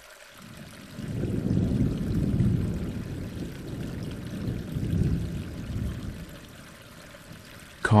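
Rushing water, swelling in surges around two and five seconds in and dying away near the end.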